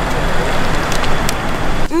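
Road traffic noise: a steady rush with a low rumble from vehicles on the road, cutting off suddenly near the end.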